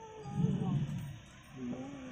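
Faint voices of people talking in the background, in a pause between lines of amplified mantra chanting.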